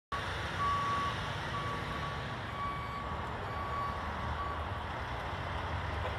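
Backup alarm of a heavy tank truck beeping about once a second while it reverses, over the steady running of the truck's diesel engine.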